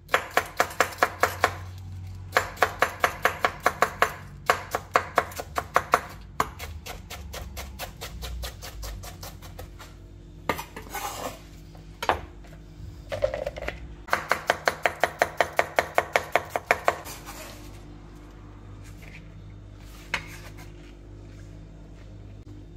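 Chef's knife shredding a cabbage on a bamboo cutting board, the blade knocking the board in quick, even runs of about five chops a second. In a pause midway there are a few softer scrapes and knocks as the shreds are scooped up on the blade.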